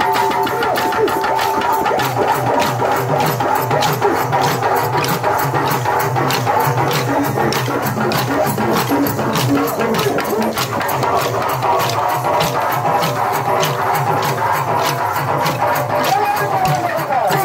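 Telugu pandari bhajana music: sustained pitched tones carrying the tune over a fast, even beat of sharp wooden clicks, about four a second.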